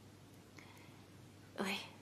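Quiet room tone, then a single softly spoken "oui" from a woman near the end.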